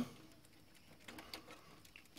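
Nearly quiet, with a few faint clicks and scuffs from about a second in: a network cable and its plug being handled against the back of a server.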